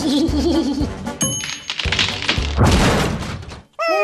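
Cartoon music with comic sound effects. A wobbling tone opens it, a bright ding comes about a second in, and a noisy rush follows between two and three seconds in. The sound cuts out briefly near the end, and a falling, sliding tone begins.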